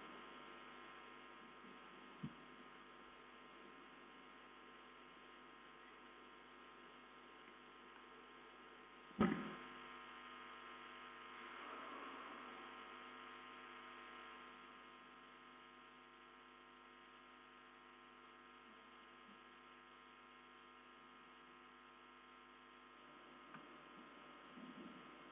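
Near silence apart from a steady electrical mains hum with many even overtones, with a faint click about two seconds in and a single sharp knock about nine seconds in.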